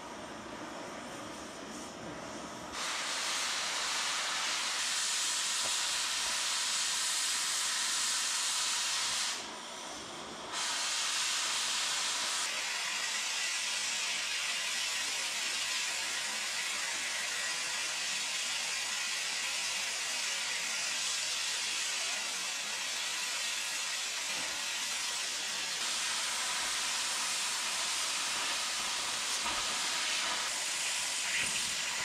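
Oxy-fuel cutting torch cutting through steel plate: a softer hiss of the preheat flame, then about three seconds in a much louder steady hiss as the cutting oxygen jet is opened. It stops for about a second near ten seconds in, then runs on steadily.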